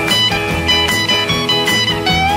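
Live early-1960s rock and roll band playing an instrumental guitar break with no vocals, over bass and a steady beat.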